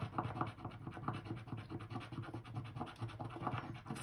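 A coin scraping the scratch-off coating of a paper scratcher card in rapid, repeated strokes.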